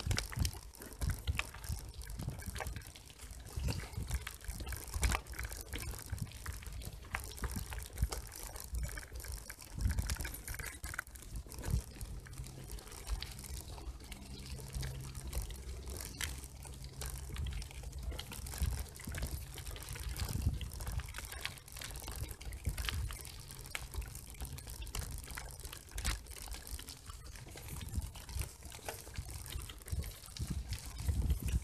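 Bicycle tyres rolling over a gravel path: a continuous crunching, dense with small clicks and rattles, over an uneven low rumble.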